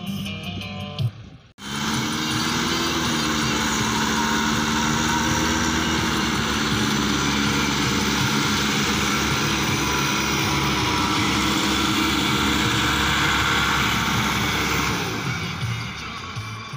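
Farm tractor's diesel engine running steadily close by, a low pulsing rumble that cuts in suddenly about a second and a half in and falls away near the end.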